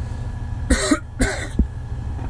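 A man coughs twice, about half a second apart, over the steady low rumble of the Caterpillar 980M wheel loader's diesel engine running beneath the cab.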